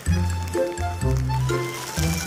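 Background music with a bass line that changes note about every half second under chords.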